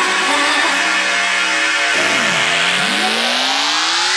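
Electronic dance music track: held synth chords, then from about two seconds in, several rising synth sweeps build up toward a drop.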